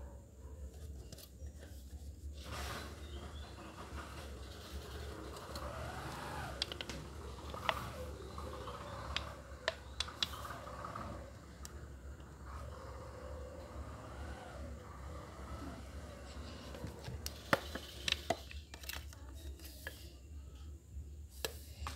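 Thin aluminium beer can handled and pressed by hand, giving scattered sharp crinkling clicks over a steady low hum.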